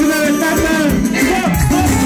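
Live band playing Romanian Banat-style party folk music on keyboard and violin, a quick, ornamented melody over a steady beat.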